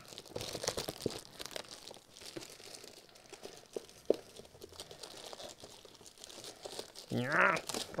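Webcam box packaging handled and torn open by hand: rustling and crinkling with scattered small clicks, busiest in the first couple of seconds. A voice speaks briefly near the end.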